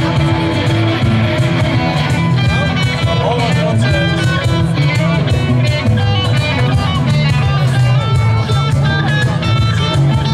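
Live band music: a guitar picking a quick lead line over strummed guitars and a steady bass.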